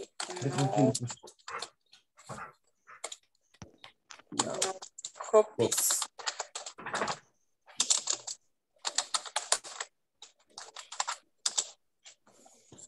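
Typing on a computer keyboard: quick runs of keystrokes in several short bursts with pauses between them.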